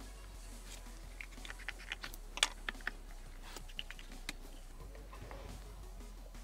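Irregular light clicks and taps of a cardboard sheet and a pen being handled against a wooden workbench and a small wooden crate, most of them in the middle seconds, over a faint steady low hum.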